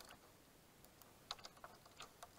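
Near silence, broken by a few faint, short ticks of water splashing and dripping against the kayak or the camera, most of them in a brief cluster past the middle.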